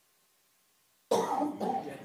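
Silence, then the room microphone sound cuts in abruptly about a second in with a person coughing close to a microphone.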